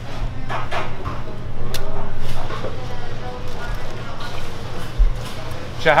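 Fast-food restaurant room sound: a steady low hum under indistinct background voices, with a few dull low thumps.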